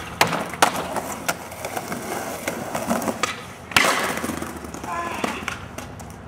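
Skateboard wheels rolling on concrete, broken by several sharp clacks of the board's tail and wheels striking the ground; the loudest clack comes a little before four seconds in.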